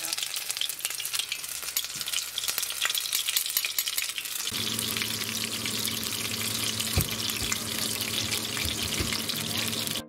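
Small fish fillets frying in hot oil in a nonstick pan: a steady, dense crackling sizzle. About halfway through, a low steady hum joins.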